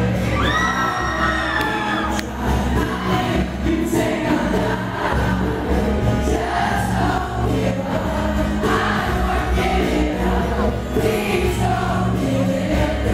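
Live pop-rock band performance with a male lead singer singing into a microphone over acoustic guitar and a steady bass and drum backing. A long high note is held in the first two seconds, falling slightly as it ends.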